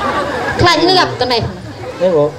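Khmer speech through stage microphones over a murmur of background chatter.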